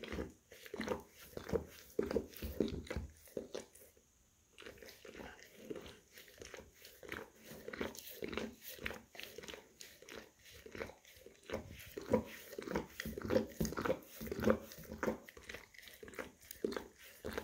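English cream golden retriever licking and grooming its front paw: a quick, continuous run of licks, with a brief pause about four seconds in.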